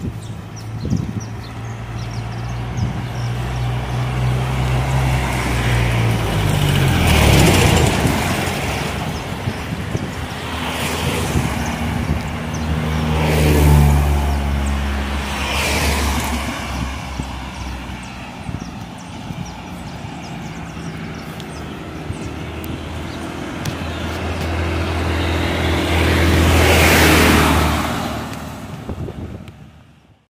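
Road traffic: cars and a truck pass close by one after another, each swelling up and fading with a falling engine note. The loudest pass comes near the end.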